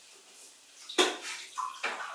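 Water splashing at a kitchen sink, with a sharp clatter about a second in and another near the end, like dishes being knocked together in the sink.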